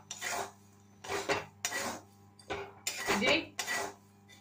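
A metal spatula scraping across a metal pan as it stirs black chickpeas through a bed of hot salt for dry-roasting. There are about five separate scraping strokes.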